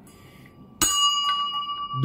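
Small brass hanging bell struck once a little under a second in, then ringing on with several clear, steady tones that slowly fade.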